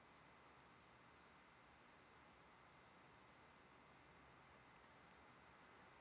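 Near silence: faint steady hiss of the recording, with no sound events.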